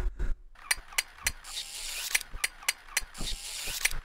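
A string of about a dozen sharp, irregularly spaced clicks, with two short passages of hiss, about a second and a half in and again past three seconds.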